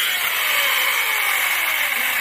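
Corded electric chainsaw running, a steady loud whine whose motor note slowly sinks in pitch.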